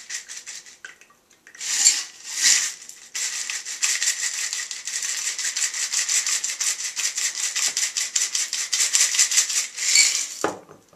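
Crushed ice rattling and scraping in a metal cocktail shaker as it is shaken, tilted over a glass, to force the last of a daiquiri out through the strainer. Two short shakes come about two seconds in, then steady quick shaking at about seven strokes a second until just before the end.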